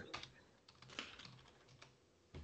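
Faint computer keyboard typing: a few soft, scattered keystrokes.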